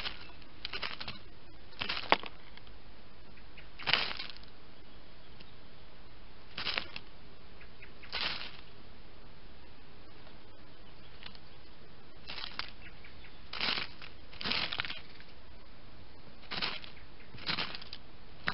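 Dry leaf litter and bark mulch rustling in short scuffling bursts, about nine of them one every second or two, as a juvenile blackbird hops and rummages through it.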